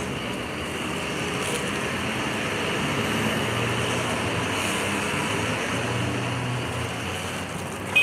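Street go-karts and cars driving past on a city street: a steady traffic hum that swells a little in the middle.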